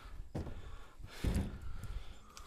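Dry black locust firewood rounds knocking against each other as they are handled and stacked: a dull knock about a third of a second in and a louder one a little after a second.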